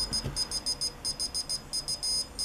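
Piezo buzzer on a homemade electronic Morse keyer beeping Morse code: a high-pitched tone switched on and off in short dots and longer dashes. It is sending random five-character groups for Morse reception training.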